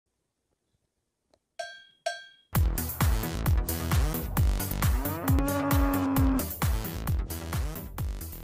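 Intro jingle: two ringing, bell-like strikes about a second and a half in, then electronic music with a steady thumping beat kicks in, with a long held low note near the middle.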